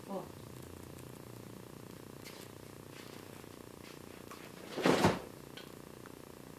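Steady low hum with a few faint clicks, and a short, loud rushing noise about five seconds in that swells and falls away.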